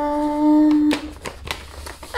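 A woman's voice holding one steady hummed note, the drawn-out end of a sung "ta-da", for about a second, then a few crisp crackles of a sheet of paper being unfolded.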